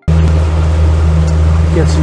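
Boat motor running steadily underway, a loud, even low drone with a hiss of moving water over it.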